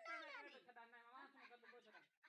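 A newborn calf bleating softly in one drawn-out, wavering call.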